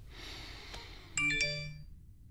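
Smartphone message notification chime: a short two-note electronic ding a little over a second in, ringing briefly and fading, signalling an incoming message.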